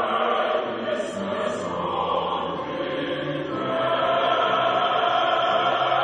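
A large choir singing in parts, holding long chords. Sharp 's' sounds cut through about a second in, and the chord swells louder a little past halfway.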